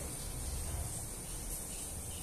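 Steady background hiss with a low rumble underneath, with no distinct events standing out.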